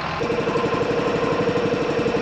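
An engine running steadily with a fast, even pulse, joined a moment in by a steady whine that holds.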